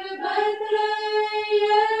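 Choir of Orthodox nuns singing liturgical chant unaccompanied, a single melodic line held on long notes, stepping up in pitch shortly after the start.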